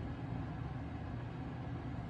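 A steady low rumble of room background noise, with no distinct events.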